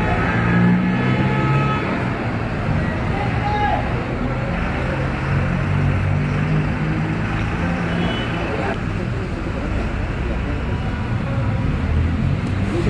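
Indistinct background voices over a steady din of vehicles and traffic.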